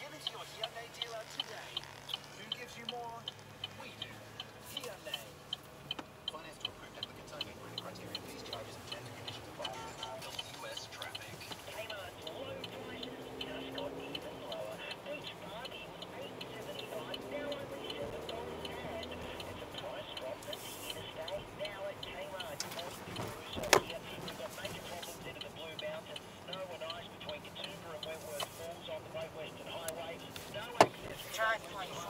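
Car turn-signal indicator ticking steadily inside the cabin, with faint talk in the background and one sharp click about twenty-four seconds in.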